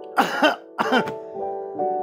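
A man coughing twice in short harsh bursts, about a quarter second in and again just before a second in, over soft sustained keyboard background music.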